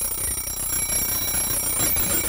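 Mechanical 60-minute wind-up timer's bell ringing steadily, set off by turning the dial back to zero: a horrible, most irritating ring.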